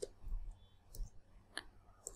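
About four faint computer keyboard keystrokes, irregularly spaced.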